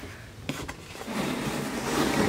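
Light handling of a phone in a hard case on a cardboard tray: a small tap about half a second in, then soft rubbing as it is slid into place.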